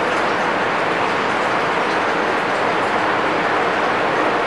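Steady rushing noise at an even, fairly loud level, with no speech and no distinct strikes or tones.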